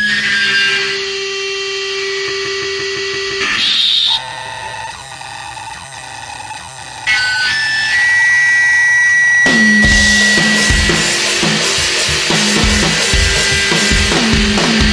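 Powerviolence band recording: a stretch of guitar feedback and noise, with steady whining tones and a quieter dip in the middle, then the full band with fast, pounding drums comes back in about nine and a half seconds in.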